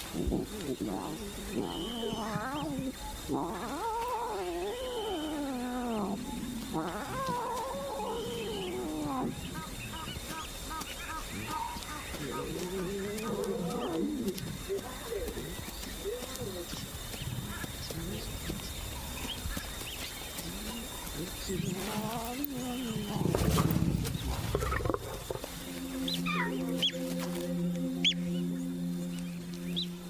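Lion cub calling with repeated wavering mews that rise and fall in pitch, with a louder, deeper lion growl about three-quarters of the way through. Music comes in near the end.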